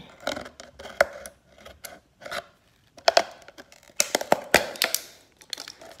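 Scattered light clicks, ticks and rustles, with one sharper tick about a second in, a near-quiet stretch in the middle and a quick cluster of ticks around four seconds in.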